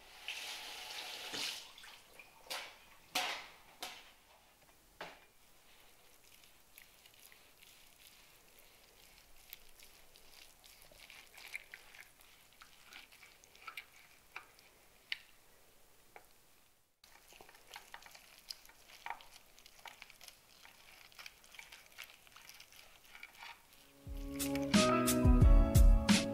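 A few clicks and knocks of metal tongs handling a hot roast beef joint, then faint, irregular crackling and sizzling from the freshly roasted meat. Music comes in loudly near the end.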